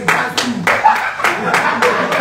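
A room of people clapping a steady beat, about three claps a second, with voices chanting and calling over it.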